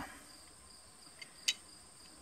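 Faint, steady chirring of insects such as crickets, with a single sharp metallic click about one and a half seconds in from the Zastava M57 pistol's slide and barrel being handled.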